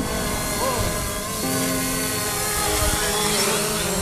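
Fimi X8 SE quadcopter's propellers and motors running as it hovers nearby, a steady multi-tone whine whose pitches shift slightly as the drone yaws, with a low wind rumble on the microphone.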